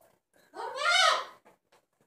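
A single high-pitched vocal cry, about a second long, that rises and then falls in pitch.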